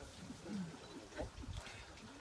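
A quiet lull filled with faint, scattered voices and murmurs from a gathered group of people.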